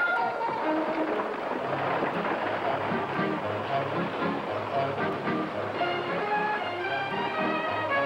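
Orchestral film score with strings, its held notes coming through clearly after the first second or so, over a steady noisy bustle of horses and wagons.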